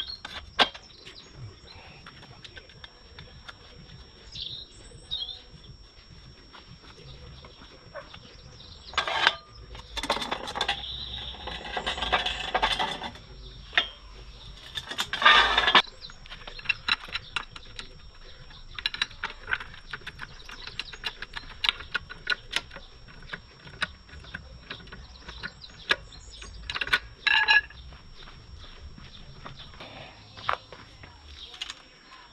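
Workshop clatter from a trolley jack being set under a motorcycle and pumped to lift its front wheel off the ground: a run of metallic clicks and knocks, with a longer noisy stretch about ten to fifteen seconds in. Birds chirp briefly a few seconds in.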